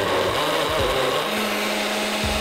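Full-size countertop blender running at speed, blending strawberries and milk into a smoothie: a loud, steady whir that starts suddenly.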